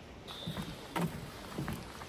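Footsteps on boardwalk deck boards, about two dull thuds a second as someone walks along it.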